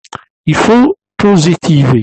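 A man speaking, after a couple of brief clicks at the very start.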